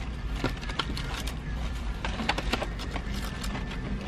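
Paper gift bag and crinkle-cut paper shred rustling and crackling as a carded pack of cookie cutters is pulled out: a run of small, irregular crackles and clicks over a steady low hum.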